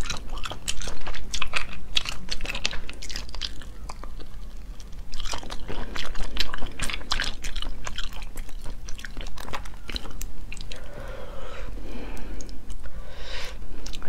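Close-miked chewing of sea snail meat, with a dense run of short, wet mouth clicks and smacks.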